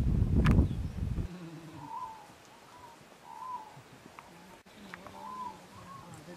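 A bird calling over and over, a short rising-and-falling note repeated about every second. It follows a loud low rumble of noise on the microphone in the first second.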